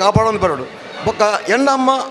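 A man speaking into a hand-held microphone.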